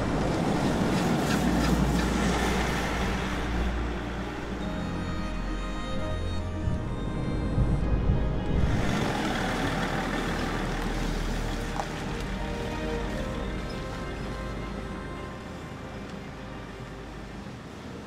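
Background music with an SUV driving past, its engine and tyre noise swelling as it passes close by at the start and again about nine seconds in, then fading.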